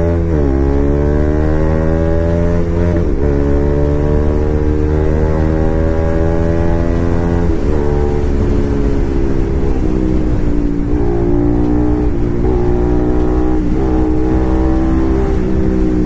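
Single-cylinder 200 cc sport motorcycle engine, a Bajaj Pulsar RS 200, heard from the rider's seat as it accelerates through the gears: the pitch climbs, drops sharply at an upshift, and climbs again, three times in the first eight seconds. After that it holds a steadier cruising note with a few brief dips as the throttle is eased.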